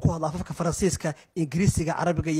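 A man's voice narrating, speaking with a brief pause about halfway through.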